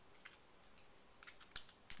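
Near silence with a few faint metal clicks as a flathead screwdriver tip seats in the slot of the gold flint-tube screw on a Zippo insert's underside. The loudest click comes about one and a half seconds in.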